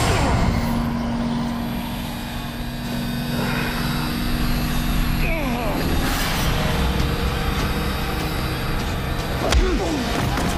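A crowd shouting and cheering around a fistfight, with a low steady tone under it through the first half. A single sharp hit lands near the end.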